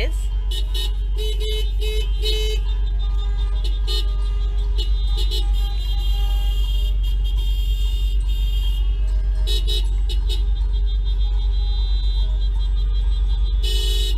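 Car horns honking in protest in a slow car caravan, several sustained honks over a steady low rumble of traffic, heard from inside a car.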